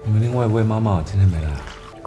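A man speaking a line of dialogue over background music.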